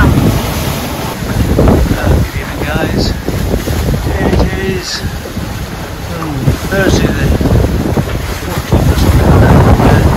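Wind buffeting the microphone over the rush of waves along a sailing catamaran's hulls, swelling and easing as the boat rolls.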